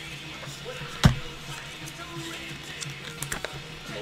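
Cassette tape case and paper insert being handled: one sharp knock about a second in, then a few light clicks and rustles near the end as the folded lyric sheet is pulled out.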